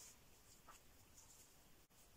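Faint, soft strokes of a fine synthetic round brush on paper, a few short scratches over near silence.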